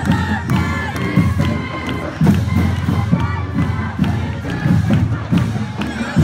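A parade crowd cheering and shouting over a marching band's horns and drums, with heavy drum thumps about two seconds in and again near the end.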